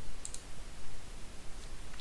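A few faint computer mouse clicks over a low steady room hum.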